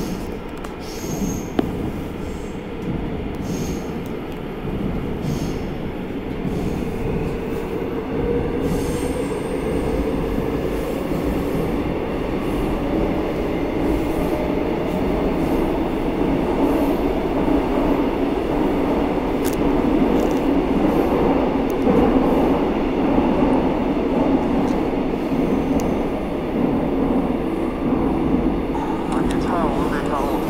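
Seoul Metro Line 9 subway train running between stations, a continuous rumble that grows gradually louder through the first half and then holds steady.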